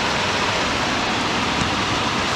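Steady hiss of pouring rain.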